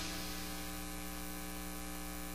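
Steady electrical mains hum with a light hiss underneath, heard in the recording chain while the music drops out.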